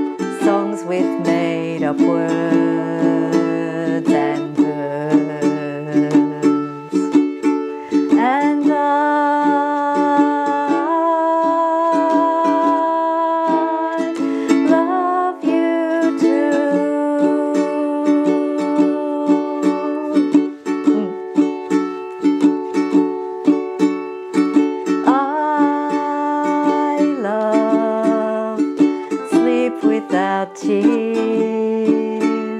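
Ukulele strummed in a steady rhythm, with a woman singing a children's song over it.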